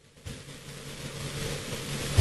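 A moment of silence, then about a quarter second in a steady rushing noise with a low hum starts and slowly builds. This is outdoor ambience picked up by the camera's microphone.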